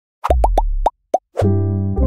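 Logo jingle: five short rising plops, the first four over a deep bass note, then a deep held chord starting near the end.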